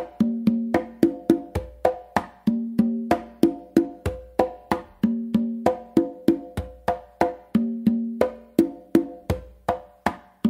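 Congas played by hand in a steady, repeating tumbao pattern: ringing open tones mixed with sharp slaps, several strokes a second.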